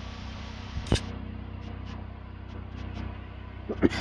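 Steady low mechanical hum with a sharp click about a second in and another near the end.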